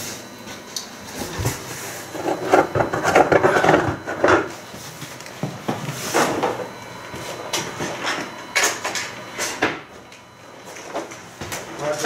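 Hands handling a cardboard shipping carton sealed with packing tape: several sharp knocks and scrapes on the box, with some indistinct voice for about two seconds.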